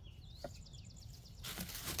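Faint bird chirps and a quick trill in the background. About three-quarters of the way through, a rustle of soil and dry leaves starts as a hand digs in the grow bag.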